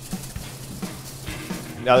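Quiet background music, with the faint rattle of granulated dry rub being shaken in a glass shaker jar.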